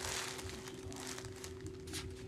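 Light crinkling and rustling of yarn balls and their labels being handled, with many small irregular crackles, over a faint steady hum.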